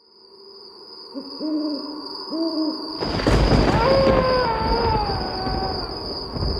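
Cartoon night sound effects: an owl hoots twice, then a wolf gives one long, slowly falling howl over a sudden rush of noise. A steady high chirring of crickets runs underneath.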